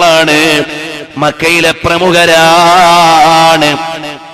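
A man's voice chanting a drawn-out melodic phrase, with a long wavering held note in the second half that fades just before the end.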